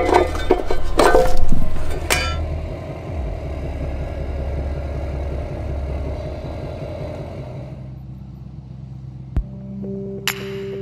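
Clicks and clatter of metal gear being handled. Then a low, steady rumble of a vehicle engine running, with music coming in near the end.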